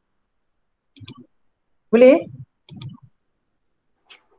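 Mostly quiet, with a woman asking a one-word question about two seconds in and a few faint clicks around it.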